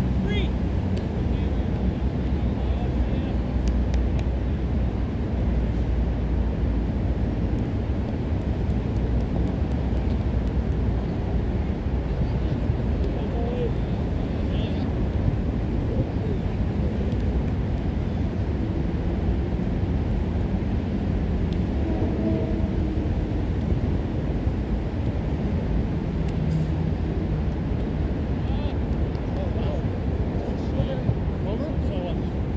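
Steady low rumble of outdoor ambience, with faint, scattered shouts and voices of players on the field.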